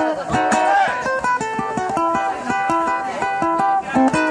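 Guitar played live in an instrumental break between sung lines, a quick picked melody over low bass notes.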